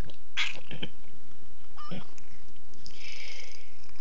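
Tabby cat purring steadily close to the microphone, with a faint brief call about two seconds in.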